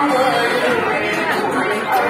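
Chatter of a street crowd: several people talking at once.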